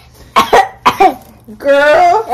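A young girl coughing twice into her elbow, two short coughs about half a second apart.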